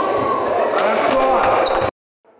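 Live sound of an indoor basketball game in a large gym: the ball bouncing on the court, with players' voices calling out over it. It cuts off abruptly near the end.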